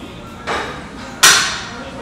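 A sudden sharp knock about a second in, the loudest sound here, fading over about half a second, with a softer rush of noise just before it.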